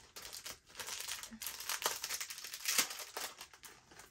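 Small packet of a charm bracelet being handled and opened, its packaging crinkling in irregular bursts throughout.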